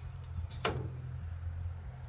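Metal lever handle of an old, rusty door being pressed, with one sharp click from the handle or latch about two-thirds of a second in, over a low steady rumble.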